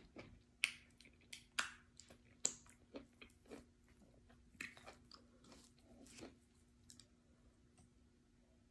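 Close mouth sounds of eating fufu with ogbono soup: wet chewing with sharp lip smacks and clicks, clustered in the first few seconds and again around five to six seconds in, thinning near the end. A faint steady hum runs underneath.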